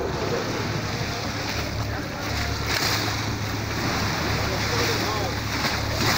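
Waves of the Bosporus surging and breaking against the rocky shore: a steady wash of surf, with heavier splashes about three seconds in and again near the end.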